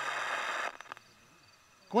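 Portable FM radio giving out static hiss while being tuned between stations. The hiss cuts off abruptly under a second in, leaving faint insect chirping.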